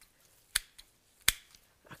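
Small hand garden snips cutting perennial basil stems: two sharp snips about three quarters of a second apart, the second louder, with a fainter click between.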